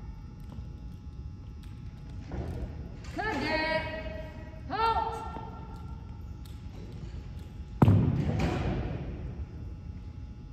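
Two drawn-out shouted drill commands echo in a large gym, then about eight seconds in a single sharp thump on the hardwood floor rings through the hall; it is the loudest sound.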